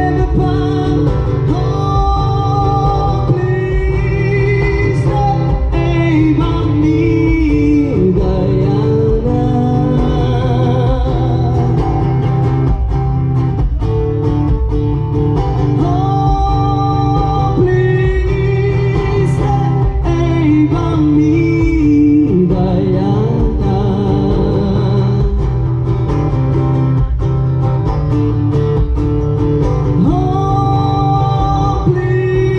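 Live solo performance: a singer with vibrato in the voice, accompanying themselves on an amplified acoustic guitar.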